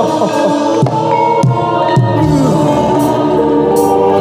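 Live Javanese kuda kepang (jaranan) accompaniment music: singing over an ensemble of sustained pitched instruments, punctuated by a few sharp drum strokes.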